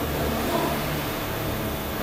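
A steady low mechanical hum with a faint even hiss.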